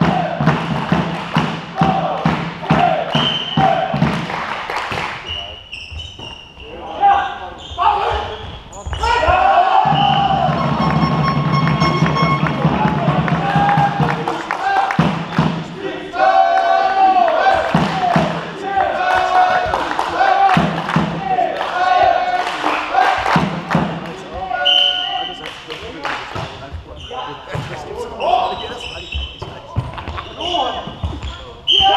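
Indoor volleyball play: repeated sharp hits of the ball amid players calling out to each other, echoing around a large sports hall.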